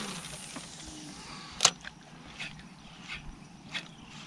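Spinning reel just after a cast: one sharp click about a second and a half in, the bail snapping closed, then a few faint ticks.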